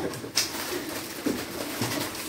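Plastic snack packet crinkling as it is torn open by hand, with one sharp crackle about a third of a second in. Short low hum-like sounds follow later.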